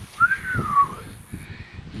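A single whistled note, under a second long, that glides up and then down in pitch.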